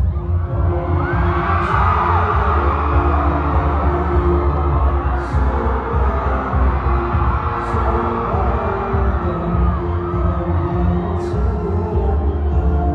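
Loud amplified concert music with a heavy bass beat kicks in suddenly over the hall's sound system. The audience screams and cheers over it.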